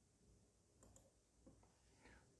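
Near silence with a few faint computer-mouse clicks: a quick pair a little under a second in and another about a second and a half in.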